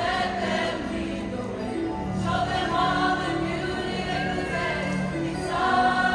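A mixed-voice student choir singing in harmony, holding long chords that move to new ones about two seconds in and again near the end.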